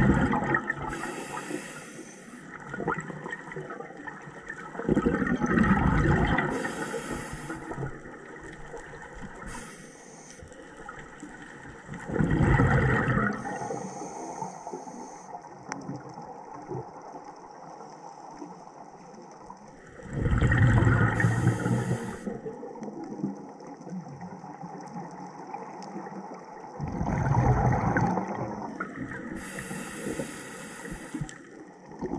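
Scuba diver breathing through a regulator underwater. A loud rush of exhaled bubbles comes about every seven seconds, five times in all, with a short high hiss of the regulator on each breath in between them.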